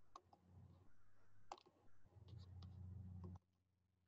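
Faint clicks of a computer mouse, about six single clicks at irregular spacing, over a low steady hum. Everything cuts off suddenly to near silence about three and a half seconds in.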